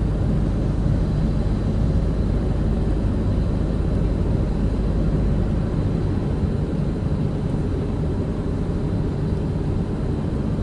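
Steady car cabin noise while driving slowly in traffic: a low rumble of engine and tyres on a wet road.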